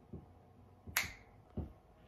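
A single sharp snap about halfway through, with a few soft low thumps before and after it.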